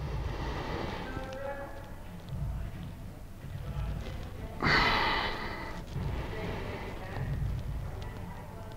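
A man exhaling heavily once, about halfway through, during deep shoulder soft-tissue work, over low rumbling handling noise of bodies shifting on a treatment table.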